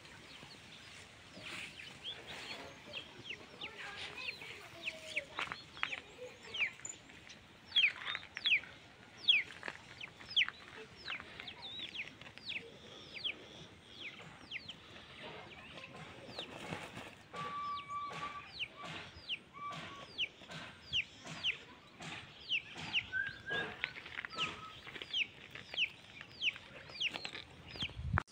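Domestic chickens calling in a yard: a long, irregular run of short, high chirps, each falling in pitch, about one or two a second, with a few brief held notes past the middle.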